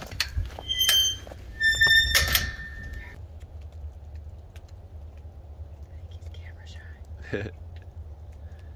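A short, high-pitched squeak about a second in, then a second squeak that ends in a loud thunk a little past two seconds in, over a steady low rumble.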